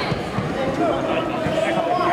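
Overlapping voices of spectators and coaches talking and calling out around the mat.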